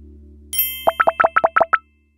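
Animated logo-intro sound effects: a shimmering chime about half a second in, then a quick run of about seven short pitched pops, about eight a second, that stops abruptly near the end. A low note from the intro music fades out underneath.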